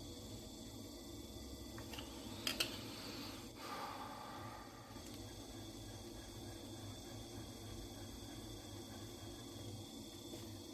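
Faceting machine's lap motor humming faintly and steadily, with a couple of light clicks about two and a half seconds in as the mast is adjusted.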